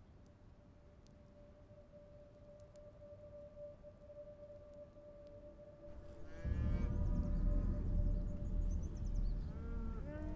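A quiet, steady held note from the drama's score. About six seconds in, at the cut, a loud low rumble sets in with a pitched animal call over it, and another call comes near the end.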